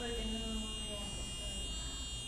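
A micro:bit's small built-in speaker buzzing a steady electronic tone at the 400 Hz pitch its program sets for both tilts. Because left and right give the same note, the tone does not change when the board is tilted.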